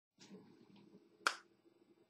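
A single sharp snap of hands coming together about a second in, after faint rustling of movement.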